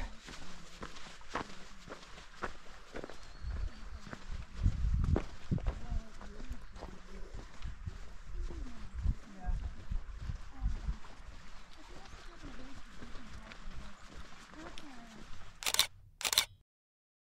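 Faint talk of other hikers over irregular low thuds of footsteps on sand and mud. Near the end a camera shutter clicks.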